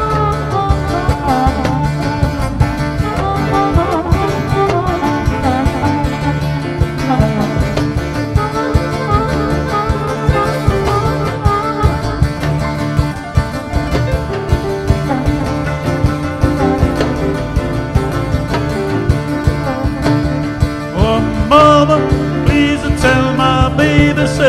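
Live blues band playing an instrumental break: a harmonica solo with wavering notes over a steady drum beat, upright bass and keyboards.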